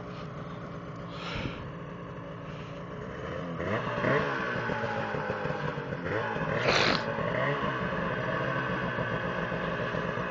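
Snowmobile engine running low, then revving up about three and a half seconds in and holding high revs in deep powder snow. A short rush of noise comes about seven seconds in.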